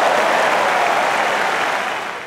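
Tennis stadium crowd applauding at the end of a rally, a dense steady clapping that swells up just before and holds level.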